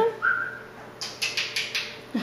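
A green-cheeked conure gives a short, soft chirp, followed about a second later by a quick run of about five faint, scratchy high sounds.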